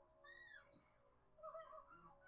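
Near silence broken by faint short pitched calls from the film soundtrack: an arching cry about a third of a second in and a wavering one near the end, animal-like.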